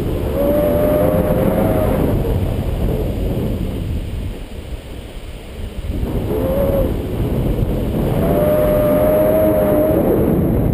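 Wind buffeting a camera microphone in flight under a paraglider, a loud, steady rumble that eases a little midway. A faint wavering whistle comes and goes over it, at the start and again near the end.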